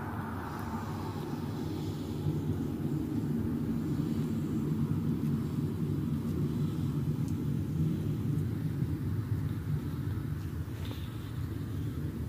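PESA Twist low-floor tram running along its tracks toward the listener: a steady low rumble of motors and wheels on rail that grows a little louder after the first two seconds.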